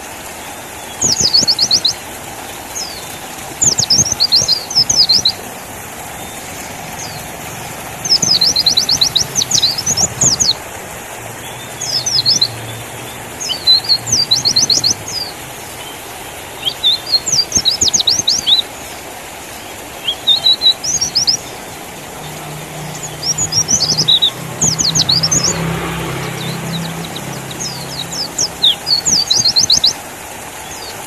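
White-eye (pleci) song: bursts of rapid, high twittering chirps in phrases of one to two seconds, repeating every second or two over a steady background hiss.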